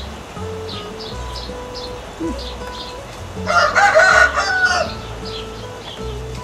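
A rooster crowing once, about three and a half seconds in, for about a second and a half; it is the loudest sound here. Small birds chirp repeatedly throughout.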